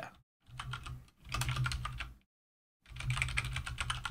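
Typing on a computer keyboard: runs of quick keystrokes broken by short pauses.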